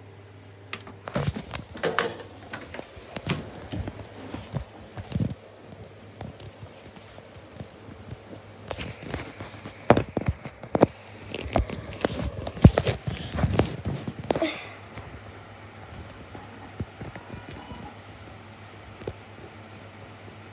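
Irregular clicks, knocks and handling noise as a disc is set into a DVD player's tray and the phone recording it is moved about, with a few footstep-like thuds; the knocks thin out in the last few seconds. A steady low hum runs underneath.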